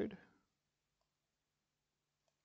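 The end of a spoken word, then near silence with a faint computer mouse click about a second in.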